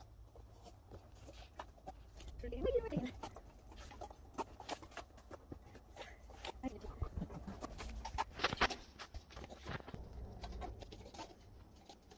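Plastic party cups being handled and pulled from a stack, a scattered series of light clicks and taps over several seconds. About three seconds in there is a short vocal sound.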